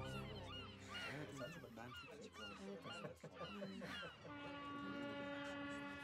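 Seagulls calling in a rapid series of short cries over a faint background murmur. About four seconds in, soft sustained music comes in beneath them.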